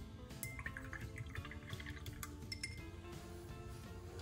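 Background music, with a paintbrush being rinsed in a glass jar of water: splashing, and clinks of the brush against the glass, during the first couple of seconds.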